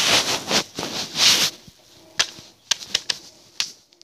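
A CD in its plastic jewel case being handled: rustling and rubbing for about a second and a half, then several sharp plastic clicks.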